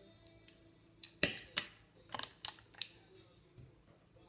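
Light clicks and taps of a plastic powder compact and makeup brush being handled, about six short knocks over a couple of seconds, the loudest a little over a second in.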